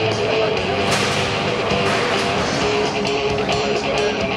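Rock music with guitar playing loudly and steadily, with a sharp knock about a second in.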